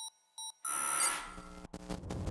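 Electronic beeps, two short ones about half a second apart, then a loud synthesized swell of noise with bright high tones starting about two-thirds of a second in and fading, with a brief break near the end: an edited sound-effect sting for a show's outro.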